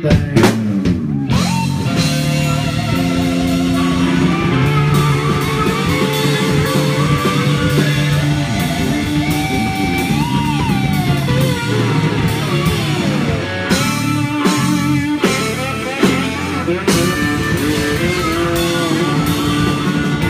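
Live blues-rock band playing an instrumental passage: an electric guitar plays a lead line with bent notes over a steady drum kit.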